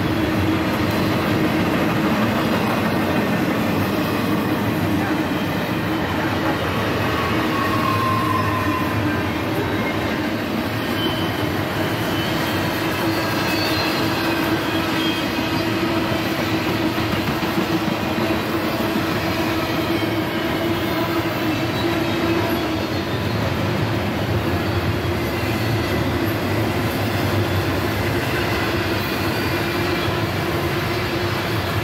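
Norfolk Southern double-stack intermodal train's loaded well cars rolling past steadily, steel wheels running on the rails, with a steady tone held over the rumble throughout.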